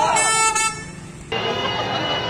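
A car horn sounds once, a steady toot lasting about half a second, among crowd noise. A little over a second in, the sound changes abruptly to the steady noise of a busy street full of cars.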